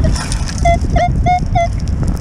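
Metal detector's target tone: four short beeps of one steady pitch, about three a second, as the coil passes over a freshly dug hole, signalling a metal target still in it. Wind rumbles on the microphone throughout.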